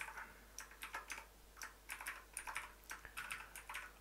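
Computer keyboard keystrokes: quiet, irregular key clicks, several a second, as text is cut, pasted and saved in an editor.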